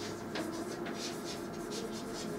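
Chalk writing on a blackboard: a run of short scratching strokes as letters are formed.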